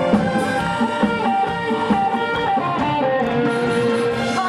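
Live band playing an instrumental break in a Korean trot song, with guitar to the fore over drums and a steady beat.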